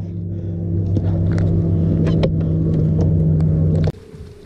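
Boat motor running steadily as a loud low hum, with a few sharp clicks on top; the hum cuts off suddenly near the end.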